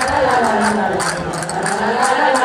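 Live folk music for a manchegas dance: a melody that moves up and down over a held low note, with short sharp clicks above it.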